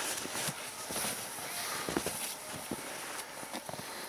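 Footsteps in snow with scattered light knocks, from a person working at a wooden beehive and stepping away through the snow.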